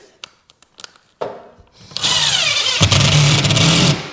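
Cordless DeWalt 18 V impact driver driving a screw into plasterboard, starting about two seconds in and running for about two seconds, getting heavier for the last second. A faint knock comes before it.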